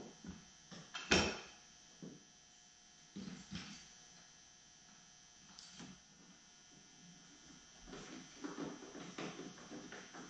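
Scattered knocks and clunks of Thule roof-rack cross bars being handled and set on a van's metal roof, with one sharp knock about a second in and a run of softer handling knocks near the end.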